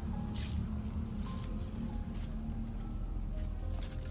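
Diluted liquid fertilizer poured from a container onto the soil around tomato plants, heard as a few short splashing bursts over a low steady rumble.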